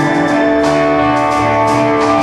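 Live rock band playing an instrumental stretch with no vocals: electric guitar holding notes over drums with cymbal strokes and a bass line that steps between notes.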